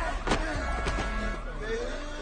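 Film sound mix: two sharp hits about half a second apart, over held tones and wavering voices in the background.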